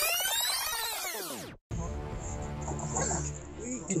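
A loud whoosh transition effect made of sweeping, arching pitches, cut off abruptly about a second and a half in. After a brief gap, quieter live outdoor sound follows, with a steady low hum and faint pitched sounds.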